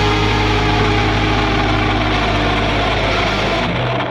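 Rock music ending on a long held chord, which cuts off near the end and rings away.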